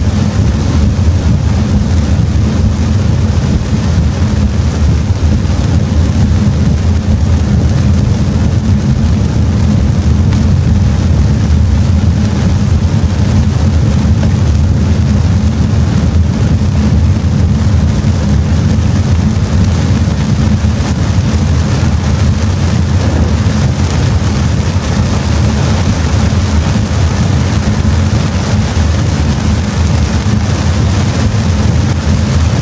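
Steady low rumble of a Toyota car driving on a rain-soaked road, heard from inside the cabin, with heavy rain on the car and the hiss of tyres on the wet surface.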